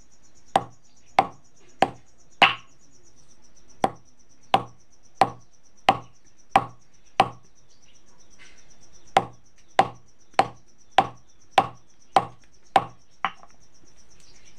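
A hand-held pounding stone striking hard hog plums (amda) on a grinding board to crack them: about eighteen sharp knocks, a little over half a second apart, with two short pauses. The fruit has gone fully hard.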